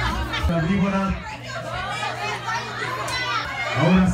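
Party crowd noise: many overlapping voices of adults and children talking and calling out, with the bass beat of dance music under them at the start.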